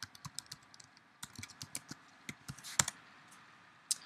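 Computer keyboard typing: a run of key clicks at an uneven pace, with one louder keystroke a little before three seconds in.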